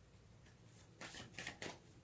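Near silence, then a few faint rustles and soft taps about a second in, from tarot cards being handled.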